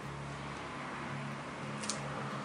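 Faint steady low hum over quiet room noise, with one brief sharp high sound near the end.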